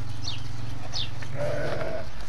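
Sheep bleating in a pen, with a higher, wavering bleat near the end.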